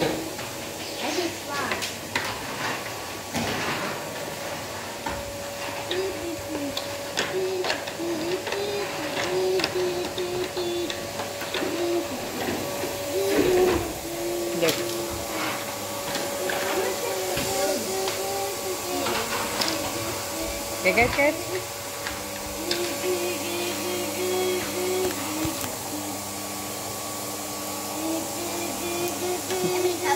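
A young child humming and babbling to himself in held, stepped notes, over clicks and knocks of hard plastic toy pieces being handled. A faint steady hum runs underneath.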